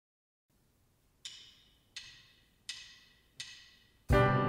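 Drumsticks clicked together four times at an even tempo, a little under a second apart, each click a short ringing wooden tick: the drummer's count-in to start the song.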